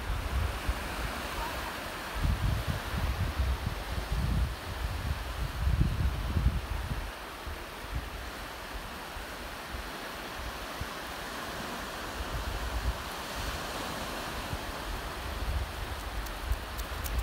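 Wind buffeting the microphone over a steady wash of surf, with heavy gusts in the first half that ease off about halfway through.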